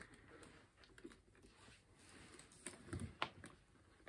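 Near silence with faint handling noise: soft rustling and a few light clicks near the end as a handbag with a metal chain strap is lifted and hung on the shoulder.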